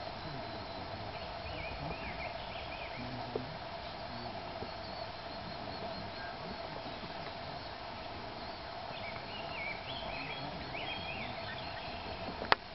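Outdoor ambience of birds chirping in short, quick phrases, once near the start and again toward the end, over a steady faint background hum.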